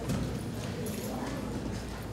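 Footsteps on a hard floor, with faint murmured voices in the room.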